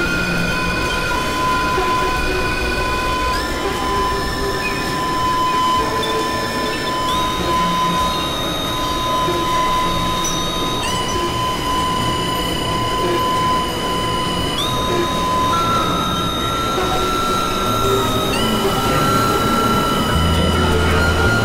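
Experimental electronic drone music: several held high synthesizer tones over a dense, noisy bed. The upper tones step to new pitches with a short upward slide about every four seconds, while a steady middle tone shifts up once, about three-quarters of the way through.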